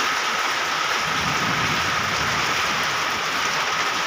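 Rain falling steadily on corrugated metal roofs, an even hiss with no breaks.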